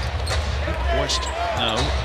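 Basketball dribbled on a hardwood court, a few sharp bounces over the steady low rumble of an arena.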